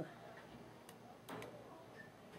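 Two faint clicks a bit under half a second apart near the middle of a quiet stretch, from a camera shutter taking a posed photo.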